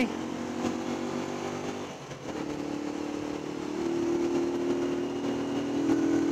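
Honda CG 125 Cargo's single-cylinder four-stroke engine running steadily under way. About two seconds in it dips briefly in level and pitch, then pulls again, with its pitch climbing a little around four seconds in.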